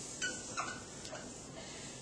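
Dry-erase marker squeaking against a whiteboard in a few short writing strokes, bunched in the first half.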